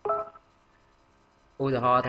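A man's voice: a short syllable at the start, then a pause, then a long, drawn-out held syllable near the end.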